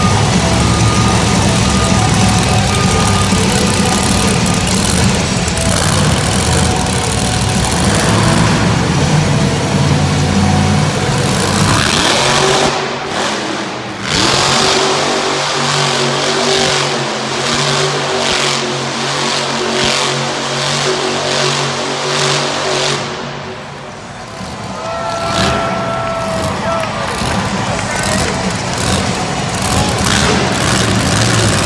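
Monster truck engine running hard as the truck spins donuts on the arena dirt. For the first dozen seconds it is a loud, rough roar. After a brief dip it settles into a steady high-revving note that dips again near the end.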